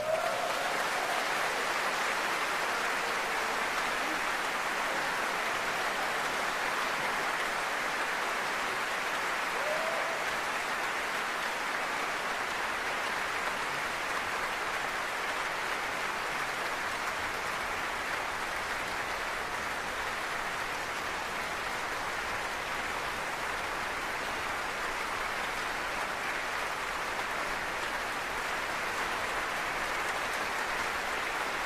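Large concert audience applauding steadily, a dense, even sound of many hands clapping.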